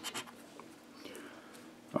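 Scratching the coating off a scratch-off lottery ticket: a last couple of quick strokes right at the start, then only faint scratching and rubbing of the card.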